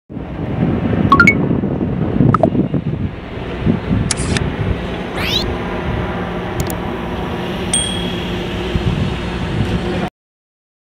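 Edited-in sound effects over a steady low background: chime-like dings about a second in and again a little later, a click, a rising whoosh about five seconds in, and a high ding near eight seconds. The audio cuts off abruptly at the end.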